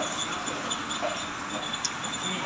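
Escalator running steadily under a rider, with a faint high whine coming and going and a single click near the end.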